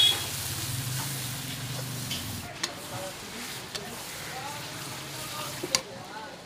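Spice and onion paste frying in a metal pan, sizzling steadily while a metal spatula stirs and scrapes it, with several sharp clinks of metal on the pan.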